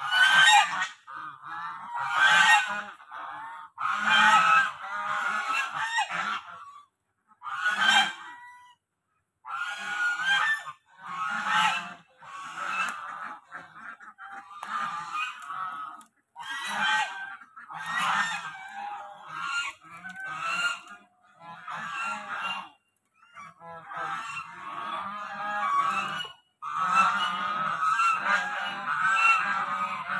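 A flock of domestic geese honking loudly and repeatedly, in bursts of many overlapping calls with short pauses between.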